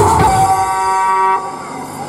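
Harmonium holding a steady reedy note that stops about one and a half seconds in, leaving a fading tail.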